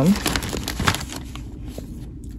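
Plastic poly mailer crinkling and rustling as a hand settles it on a kitchen scale, with sharp crackles in the first second, then quieter.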